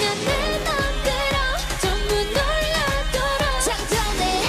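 K-pop dance-pop song: women's voices singing a melody with held and gliding notes over a steady electronic beat and bass.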